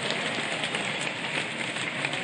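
Fireworks crackling: a dense, steady hiss of small crackles.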